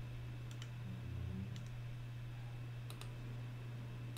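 A faint steady low hum with a few faint short clicks, some in quick pairs.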